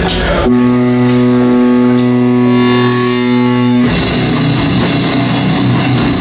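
Doom-metal band playing live: a single held note rings for about three seconds, then drums and guitars come in together with a sudden loud full-band entry about four seconds in.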